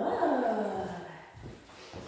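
A puppy gives one long whine that starts high and slides down in pitch over about a second, then fades.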